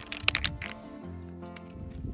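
Background music, with a few sharp clicks in the first second: rhyolite (wonderstone) rocks knocking together as they are handled on a rubble pile.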